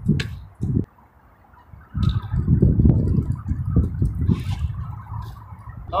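Strong wind buffeting the camera microphone: a brief gust under a second in, then a long irregular low rumble from about two seconds in that slowly eases off.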